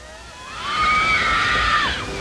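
Rushing, splashing water of a log flume's drop with a group of riders screaming together. It swells about half a second in, and the screams tail off just before the end.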